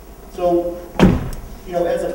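A single sharp thump about halfway through, the loudest sound here, with a brief low rumble trailing after it.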